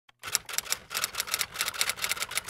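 Typewriter keys clacking in a quick, even run of about eight strokes a second: a typing sound effect as text types out on screen.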